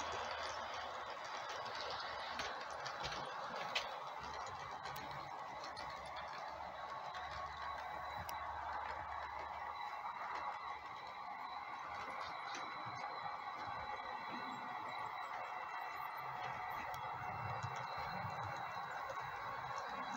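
HO-scale model train running on the track: a steady rolling rattle of wheels and locomotive motors with scattered light clicks, one sharper click about four seconds in.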